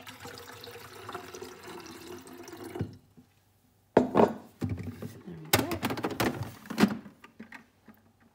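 Water poured from a jug into the plastic water tank of a De'Longhi Magnifica S Smart bean-to-cup coffee machine for about three seconds, refilling it after the low-water indicator came on. About four seconds in come several sharp plastic knocks and clatter as the tank is pushed back into the machine.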